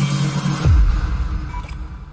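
Electronic intro music sting: a steady low drone drops sharply in pitch about two-thirds of a second in into a deep bass rumble, which then fades away.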